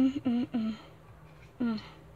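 A young girl's voice making a few short murmured vocal sounds without clear words, in two brief bursts, the second one near the end.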